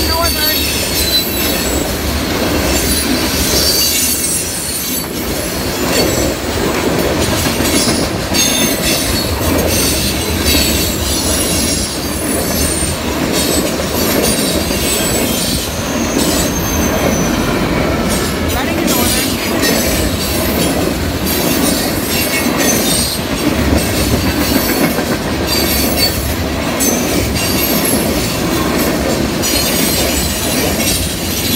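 A Norfolk Southern train's cars rolling steadily past at close range: a continuous heavy rumble with high-pitched squealing from the wheels and irregular clicks and clatter over the rail joints.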